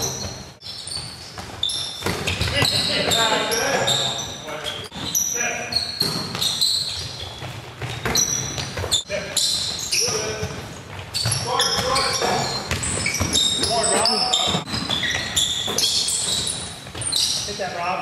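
A basketball bouncing and knocking on a hardwood gym floor during play, with repeated short high squeaks and players' voices calling out, echoing in a large hall.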